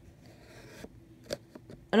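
Scissors working on a cardboard box: faint scraping and rustling with three light clicks.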